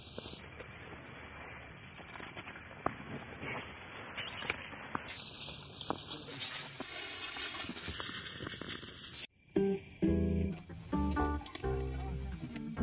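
Plastic food packaging rustling and crinkling with scattered small clicks as it is handled. After about nine seconds it cuts off abruptly and acoustic guitar music starts.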